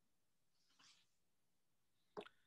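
Near silence, with one very faint brief sound a little before the middle.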